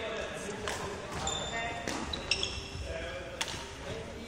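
Badminton rackets striking shuttlecocks, a few sharp hits, with short rubber-sole squeaks on the wooden court floor and voices in the background of an echoing sports hall.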